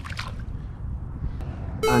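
A small hooked lizardfish splashing at the water's surface as it is reeled in, over a steady low rumble of wind on the microphone. Just before the end a loud pitched sound begins, a voice or an added sound effect.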